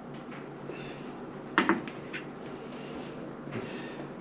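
Kitchen utensils being handled over a skillet of spaghetti: one sharp clack about one and a half seconds in, with a few faint clicks and light scraping around it.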